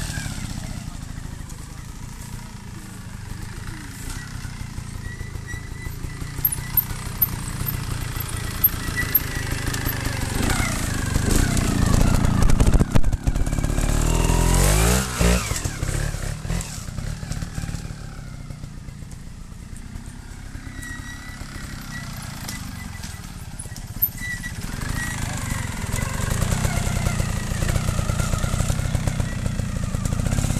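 Beta trials motorcycle engine picking its way over obstacles at low revs, with repeated throttle blips, rising to a louder, sustained rev about twelve to fifteen seconds in as it climbs a bank, then dropping back.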